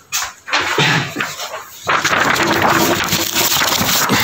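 Loud rustling and scraping close to the microphone, starting about two seconds in: clothing brushing against the recording phone as it is handled.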